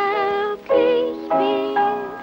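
Piano music with a melody of held notes about half a second long, some wavering with vibrato.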